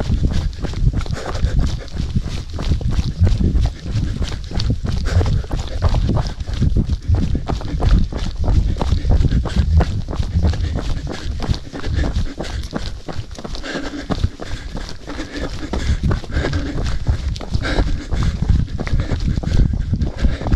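A runner breathing hard and raggedly while running uphill, with his footfalls on a dirt and gravel road. The breathing grows rougher as the climb goes on.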